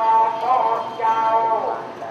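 Buddhist monks chanting together in long held notes that bend from one pitch to the next.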